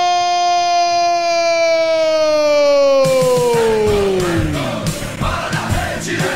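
A radio football commentator's long, held goal cry: one steady note that slides down and dies away about four to five seconds in. About halfway through, goal-jingle music with a steady beat comes in over crowd noise.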